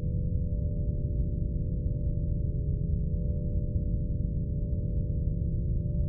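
Low, steady droning score: a dense rumble with sustained ringing, bowl-like tones above it and a faint pulse about every second and a half.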